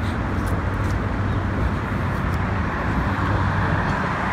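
Steady outdoor city traffic noise: an even rumble of road traffic with no single vehicle standing out.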